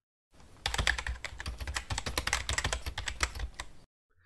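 Rapid run of keyboard typing clicks, a typing sound effect laid under on-screen title text being typed out. It starts a moment in and stops just before the end.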